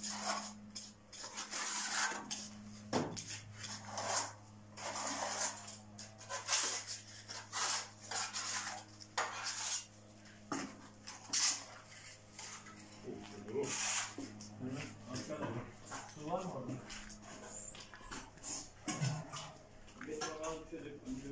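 Steel plastering trowels scraping and clinking against a hawk, a bucket and the wall as plaster mortar is scooped and spread, in irregular strokes. A steady low hum runs underneath.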